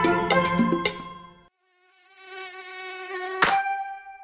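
Cartoon mosquito buzzing sound effect, a wavering buzz that grows louder for about a second and a half after the song's music stops, cut off by a sharp snap as the gecko catches it ('Hap!'). The snap is the loudest sound, and a held tone rings on after it.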